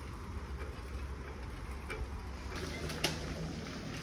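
Low steady rumble of a bicycle ride on an asphalt path, with two short clicks about two and three seconds in.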